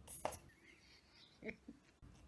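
A woman laughing quietly and breathily: a sharp breath near the start, then two short soft chuckles about one and a half seconds in.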